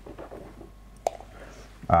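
Quiet room with a faint murmur and one sharp click about a second in, then a man's voice begins near the end.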